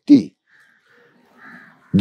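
A man's spoken word ending just after the start, then a faint bird calling in the background, loudest about a second and a half in.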